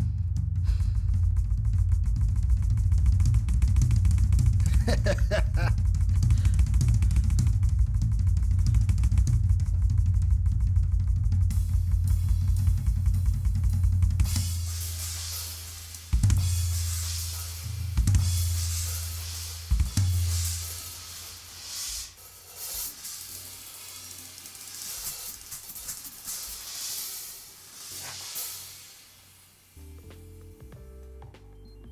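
Drum solo on a Ludwig drum kit. For about the first half there is a dense, loud run of bass drum and low drum strokes. Then the cymbals take over, with three heavy low hits about two seconds apart, and the cymbals ring on and fade out near the end.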